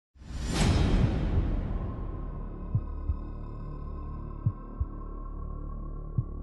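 Cinematic soundtrack: a rushing whoosh swell opens into a sustained low drone with a steady high tone. Pairs of short, deep thuds, like a slow heartbeat, come every second and a half or so.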